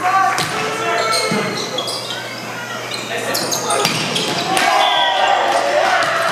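An indoor volleyball game in a gym that echoes: players' voices and calls overlap with a series of sharp ball hits and thuds on the hardwood court.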